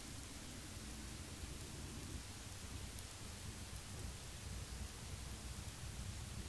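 Faint steady background noise: a low rumble under a hiss, with a faint hum in the first two seconds.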